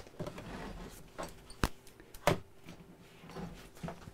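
Faint handling noises at a worktable: a few sharp clicks or taps, the two clearest about one and a half and two and a quarter seconds in, over low room noise.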